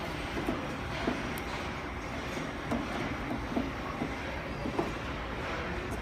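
Faint, scattered small clicks and taps of a screwdriver and hand working the steel drawer suspension rail of a file cabinet, over a steady background rumble.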